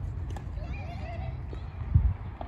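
Tennis rally heard from behind the baseline: faint ball strikes off the racket, over a steady low rumble. A brief warbling call sounds in the middle, and a loud low thump comes right at the end.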